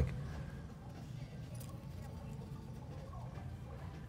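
Faint, steady low hum of room tone, with light handling knocks as the furnace's internal parts are handled.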